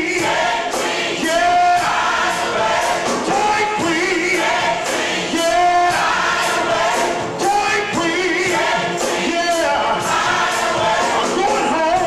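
Gospel choir singing with instrumental backing and a steady beat.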